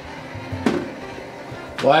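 Toaster oven's glass door closing with a single clack about half a second in.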